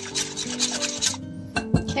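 Wire whisk scraping quickly around a glass bowl, beating egg yolks with cream in rapid regular strokes, with one knock near the end. Background music plays throughout.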